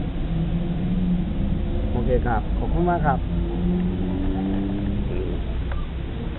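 A vehicle engine running with a steady low rumble and hum, with brief voices about two and three seconds in.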